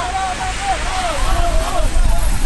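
Several people shouting over one another in a tense scuffle, with a steady low rumble underneath.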